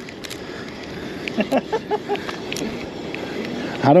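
Wind noise on the microphone with faint voices in the middle and scattered handling clicks; a man laughs near the end.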